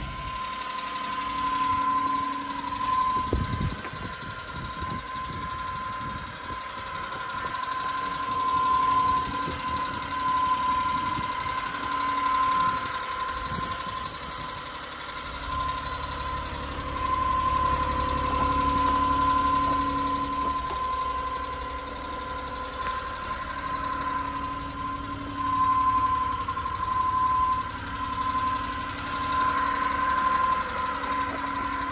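1993 Suzuki Carry DD51T mini truck's small three-cylinder engine idling steadily, with a steady high whine over the running. The low rumble grows stronger about halfway through.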